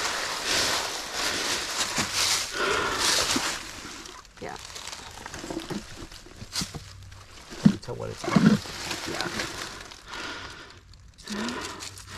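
Dry leaf litter and soil rustling and scraping under hands digging beside a rock. It is loudest for the first few seconds, then quieter and more scattered.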